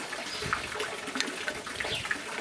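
Steady running water, with a few faint scratching ticks as a wooden stick picks old clay soil out of a bonsai's root ball.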